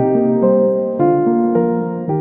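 Slow piano-style keyboard music, a new note or chord struck about every half second and left to ring.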